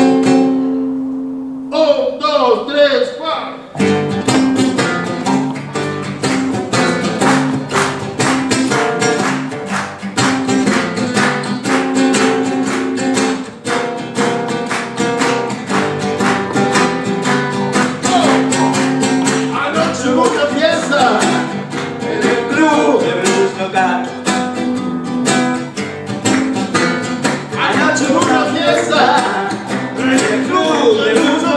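Two acoustic guitars playing a blues live: a held chord rings, then about four seconds in the band comes in with steady strumming and picked lines. A voice sings over the guitars in the second half.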